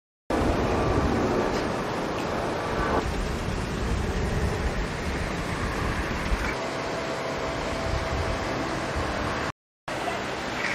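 Steady outdoor road-traffic noise with no clear single event. The sound drops out completely for a moment at the very start and again near the end.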